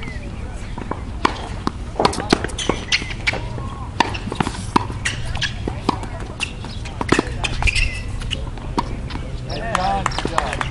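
Tennis ball being hit back and forth on an outdoor hard court: an irregular run of sharp pops from racket strings striking the ball and the ball bouncing on the court surface.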